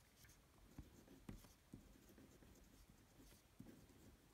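Faint scratching of a pen writing on paper, a run of short irregular strokes.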